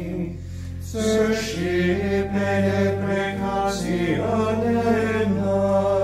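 Liturgical plainchant sung in Latin, with a steady low organ note held underneath. The singing pauses briefly at the start and resumes about a second in.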